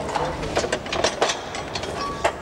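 Irregular metallic clicks and knocks, about eight in two seconds, from a camera dolly and its rails being handled and adjusted.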